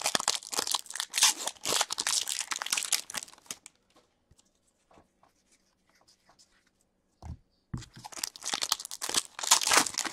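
Foil wrappers of hockey card packs crinkling and tearing as the packs are ripped open by hand. This comes in two spells, the first few seconds and again near the end, with a quiet stretch between broken by a couple of short low thumps.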